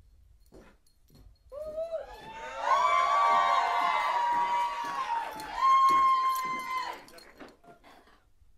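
Audience whooping and cheering, with several high voices holding long "woo" calls. It starts about a second and a half in, swells in two waves and dies away near the end.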